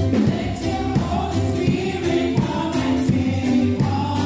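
Three women singing a gospel song together into microphones, over amplified backing music.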